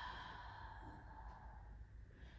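A woman's soft, breathy exhale while she holds downward-facing dog, fading away over the first second, then near silence.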